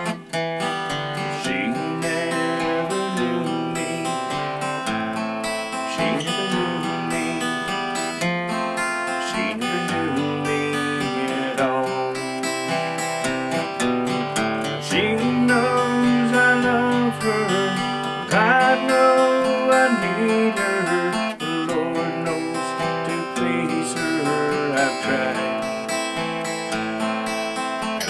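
Cutaway acoustic guitar played alone through an instrumental break of a slow country song, strummed and picked chords carrying the melody.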